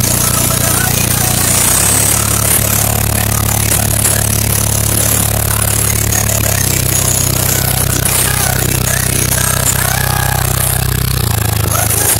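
Car-audio subwoofers playing loud, deep sustained bass notes, heard from inside the car's cabin; the bass steps to a new pitch about two, six and a half, and eleven seconds in.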